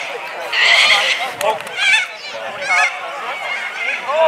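Men shouting short calls across an open rugby league field, several brief yells with a wavering pitch, over a background of voices.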